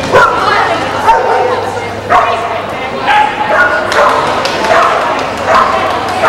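Bearded collie barking repeatedly, about once a second.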